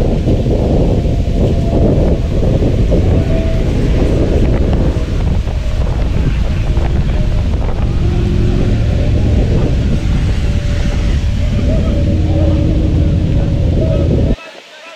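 Wind buffeting an outdoor camera microphone: a loud, steady low rumble.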